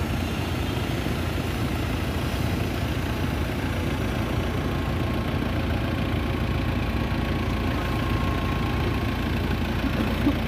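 An open jeep's engine running steadily at a slow crawl, a low, even rumble.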